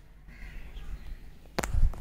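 A crow cawing, faint at first, then a loud thump near the end.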